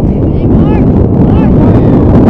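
Wind buffeting the microphone: a loud, steady, low rumble, with faint voices over it.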